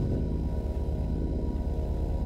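Spire software synthesizer playing an AI-generated FX preset: a dense, low rumble with a fast flutter running through it.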